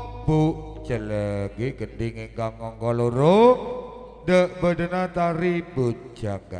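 A man's voice chanting in short melodic phrases, with one long rising slide up to a held note about three seconds in.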